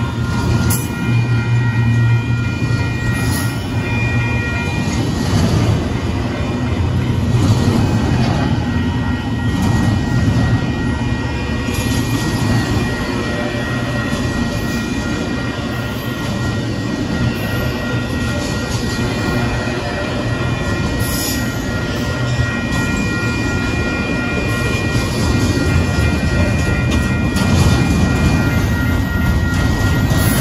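Double-stack intermodal freight train rolling steadily past a grade crossing: a continuous rumble of steel wheels on the rails, with a few thin, steady high tones held over it.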